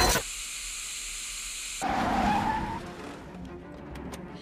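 A loud swell cuts off abruptly, leaving a thin high hiss; about two seconds in, a car's tyres screech briefly in a short rising squeal as it brakes hard, under a film's music score.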